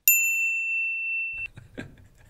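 A 'ding' sound effect: one clear, high, bell-like tone that starts sharply and holds for about a second and a half before it cuts off.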